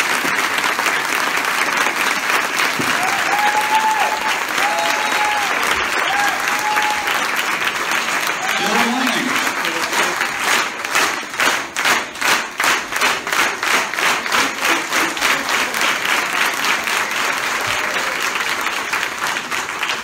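A roomful of people applauding at the end of a speech, with some cheering in the first several seconds. About halfway through, the clapping falls into a steady rhythm in unison, two to three claps a second, then loosens again near the end.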